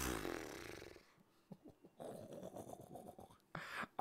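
A man's stifled laugh breathed out through the nose and mouth close to a microphone. A breathy exhale fades over the first second, soft breathing follows, and there is a quick intake of breath near the end.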